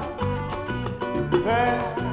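Salsa music: an instrumental passage with a bass line repeating in a steady rhythm under sliding melodic lines, with no lead vocal.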